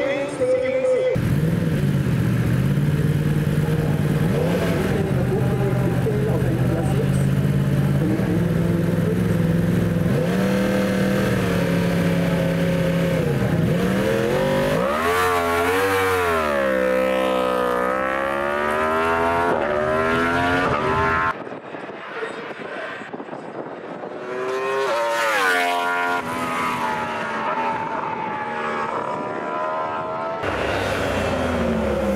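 Superstock 1000 racing motorcycle engines running hard up a hill-climb course, the note stepping between gears; near the middle a Yamaha YZF-R1 passes close, its engine note sweeping up and down. A little past two-thirds through, the sound drops abruptly to a quieter level, then rises again as a bike climbs.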